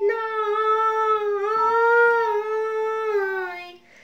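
A woman's voice singing one long held note of a Bengali devotional song. The pitch swells slightly upward in the middle and slides down near the end before the note stops. A faint steady drone runs underneath.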